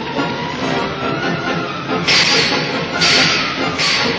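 Dramatic orchestral film score playing, with three loud rushing bursts of noise in the second half, about half a second to a second apart.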